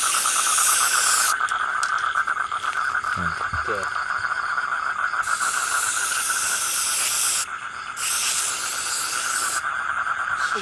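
Aerosol spray-paint can hissing in three bursts: one in the first second, one from about five seconds in, and one near the end. Under the bursts runs a steady, pulsing chirr of night insects.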